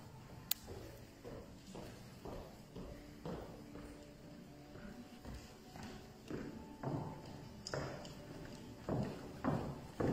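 Footsteps of heeled shoes on a hollow wooden stage, a steady series of knocks about two a second that grows louder in the last few seconds as the walker comes closer.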